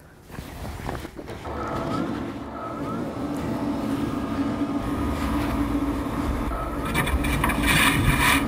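Powder-cleaning station's grinder motor switched on, building up over the first second or two into a steady mechanical hum with a held tone. Near the end a brief rush of noise joins it.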